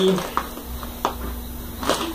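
A few light clicks and knocks from a parcel in a plastic courier mailer being handled on a desk.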